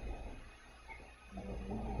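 A pause in a man's speech: quiet room tone with a low steady hum. The voice trails off at the start, and a low hummed sound from the speaker begins near the end.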